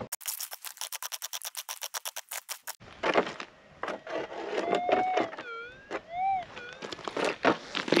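Rapid even clicking, about ten clicks a second, for the first few seconds. Then a pick scrapes and crunches into gravelly ground while a metal detector gives a smooth target tone that glides up and down twice, the signal the prospector takes for a gold nugget.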